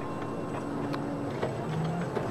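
Electric tractor running: a steady mechanical hum with several constant whining tones and light, regular ticking.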